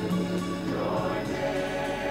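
Gospel choir singing, holding a long chord that shifts about halfway through.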